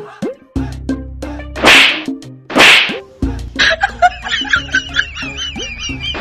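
Two loud slap sound effects about a second apart, laid over comic background music, then a wavering high-pitched comic effect.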